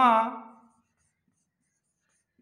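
A man's voice drawing out one syllable, which fades out well before the first second. Then near silence with faint squeaks of a marker writing on a whiteboard.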